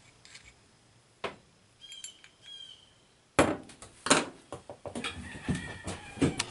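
Metal carburetor parts handled on a table: a light click, then about three seconds in a sharp knock as the carburetor body is set down, followed by a second knock and a run of small clinks and taps as screws and parts are moved. A short high chirp sounds faintly just before the knock.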